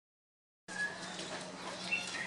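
Silence for the first moment, then outdoor background sound cuts in abruptly: a steady low hum under a noisy haze, with faint scattered short chirps and clicks.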